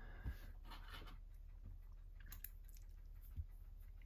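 Faint handling noises of a shrink-wrapped box: a few soft plastic crinkles and light taps, scattered and brief.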